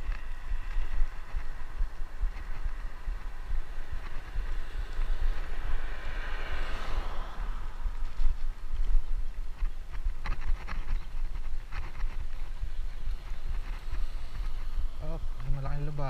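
Wind rumbling on the microphone of a camera mounted on a city bicycle as it is ridden, with road noise and a few light rattles from the bike. A passing vehicle swells and fades about six to seven seconds in.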